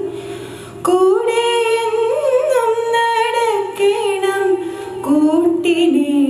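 A woman singing a slow invocation prayer solo into a microphone. She holds long notes with slow glides in pitch, pausing briefly before a new phrase begins just under a second in and again near the end.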